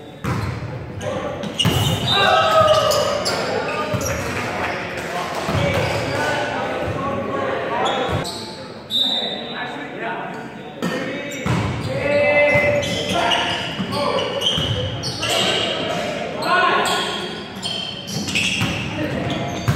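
Volleyball being struck and hitting the floor in a rally: repeated sharp hand-on-ball slaps and thuds, with players' shouted calls, echoing in a gymnasium.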